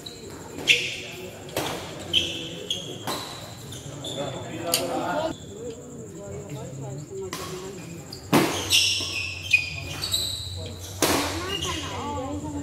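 Badminton rallies: sharp racket strikes on the shuttlecock, about nine at irregular intervals with a pause in the middle, along with sneakers squeaking on the court floor. The hall's reverberation carries voices underneath.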